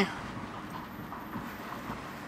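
A car driving slowly, heard from inside the cabin: a quiet, steady mix of engine and tyre noise on the road.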